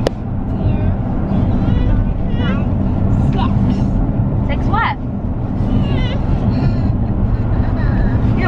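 Steady road and engine rumble inside the cabin of a moving Chevrolet Suburban, with a child's high voice laughing and squealing over it several times, and a sharp click at the very start.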